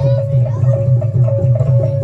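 Live Javanese gamelan music with hand-drum beats and a steady ringing metallic tone over a quick, even rhythm, played as accompaniment to a staged fight.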